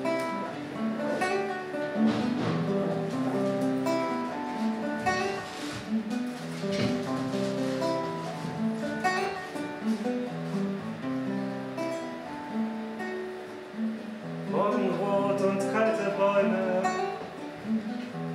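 Acoustic guitar played by hand, a steady stream of picked single notes and chords forming the instrumental intro of a folk song.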